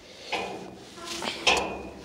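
Two short rustling clatters as a yellow webbing strap is handled and pulled, the second ending in a brief thin ring.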